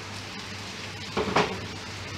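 Pot of soup boiling on a stove, a steady bubbling over a low hum. A little over a second in, a short clatter of pots.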